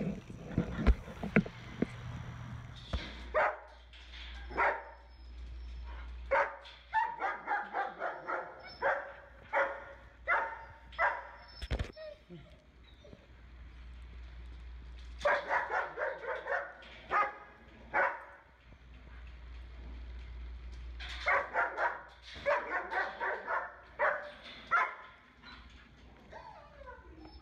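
A dog barking in runs of quick, sharp barks, separated by pauses of a few seconds.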